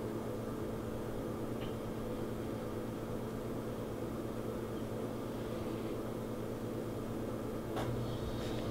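Anova sous vide precision cooker running in its water bath: a steady low hum with a couple of constant tones. A faint tap about one and a half seconds in.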